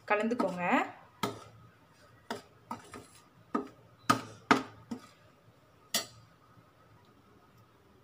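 Steel spoon clinking and scraping against a stainless steel plate while stirring idli podi powder: about nine sharp, separate clinks over roughly five seconds.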